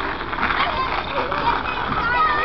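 Several children's voices chattering and calling out, high and wavering, over a steady background noise.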